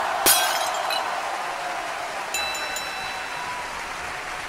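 Edited-in transition sound effect: a sudden crash followed by a long ringing, shimmering tail that slowly fades, with a few high bell-like tones joining about two and a half seconds in.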